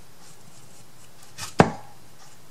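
A small wooden craft box set down on a table: a soft tap and then a single sharp knock about one and a half seconds in.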